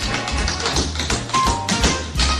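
Recorded music with fast tap-dance taps sounding over it.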